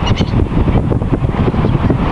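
Wind noise on the microphone, with a few short seagull calls near the start.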